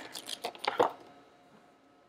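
Plastic wrapping crinkling and crackling as it is pulled off a small device, a handful of sharp crackles in the first second before it falls almost quiet.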